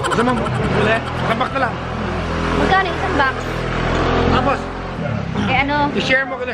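A motor vehicle's engine running with a low, steady rumble from about a second in until about five seconds in, under people talking.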